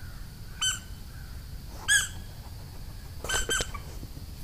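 Four short, high-pitched squeaky animal calls: one near the start, one in the middle, then two in quick succession near the end.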